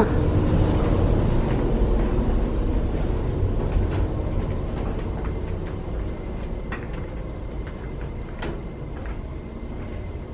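Steady low machine rumble in a ship's engine-room space, slowly fading, with a thin high-pitched machine whirring above it from about halfway through. A few sharp clicks, footsteps on the walkway, are scattered through it.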